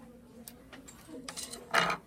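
A wooden spoon clatters briefly against a wooden tabletop near the end, after a few faint clicks of handling.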